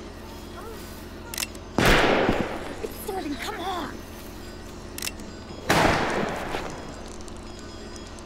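Two handgun shots about four seconds apart, each sudden and loud with a long echoing tail, and a voice crying out between them.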